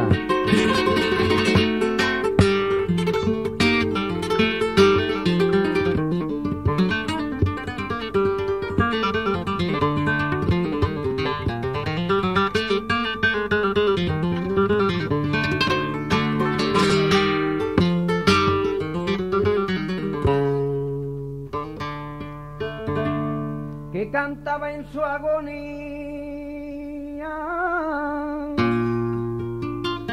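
Flamenco acoustic guitar playing alone: a fast, busy passage of strummed and picked notes for about two thirds, then thinner, slower single notes and held chords.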